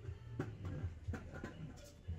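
Faint irregular knocks and rattles from a plastic shopping cart being pushed along a store aisle, over a low steady rumble.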